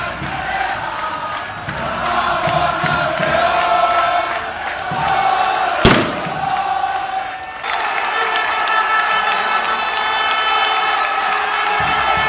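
Large crowd of football supporters chanting together, with a single sharp bang about six seconds in; for the last few seconds the chanting turns higher and brighter.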